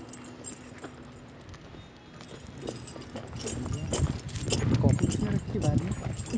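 Indistinct voices in a low-quality recording of a heated argument. They are faint over a low hum at first, then grow louder from about halfway in.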